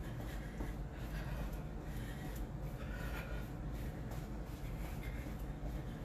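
Sneakers tapping and scuffing on a foam exercise mat in quick, uneven steps while jogging in place, over a steady low hum.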